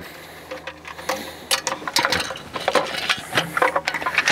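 Irregular metallic clicks and rattles from a folded metal portable camping table's frame and locking pins being handled, ahead of being unfolded.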